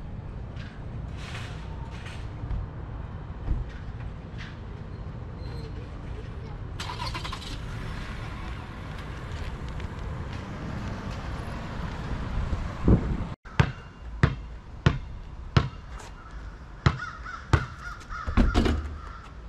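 Steady outdoor traffic rumble, with a vehicle passing through the middle. Then, after a cut near the end, a basketball bounces on a concrete driveway in a steady rhythm, about one sharp bounce every 0.7 seconds.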